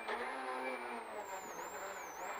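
Peugeot 208 R2B rally car's engine heard from inside the cabin, running at a fairly steady pitch, with road and tyre noise beneath it.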